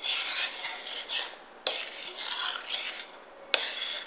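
A utensil scraping and stirring in a pan of white sauce, flour cooked in oil with milk stirred in, in uneven strokes. A sharp click comes about one and a half seconds in, and the scraping eases off briefly near the end.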